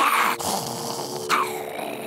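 Cartoon monster growling: a loud, rough growl at the start and a second, shorter one falling in pitch partway through, over steady held tones.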